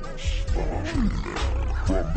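Screwed (slowed-down) G-funk hip hop track: a deep, steady bass beat with short sliding, pitched-down growl-like sounds over it.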